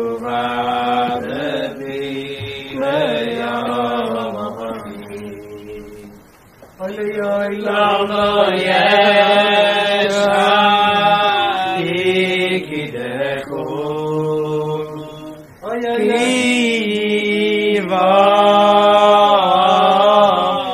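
Men singing a slow wordless Hasidic niggun, long held notes in three phrases with a short breath about six and a half seconds in and again about fifteen and a half seconds in.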